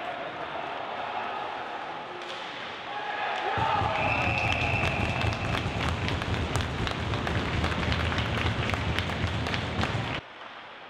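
Ice hockey rink sound: sticks, puck and boards clacking and skates on ice. About three and a half seconds in, it swells into players' shouting and a burst of stick-banging as a goal is scored, with a referee's whistle held for a second or so near the middle.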